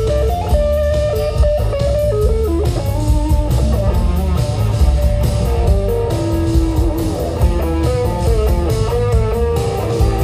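Live amplified rock band playing: an electric guitar carries a melodic single-note line over a steady drum kit beat and bass guitar.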